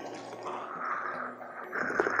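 Quiet background music with two soft slurping sips of hot espresso from a small glass, one about half a second in and one near the end.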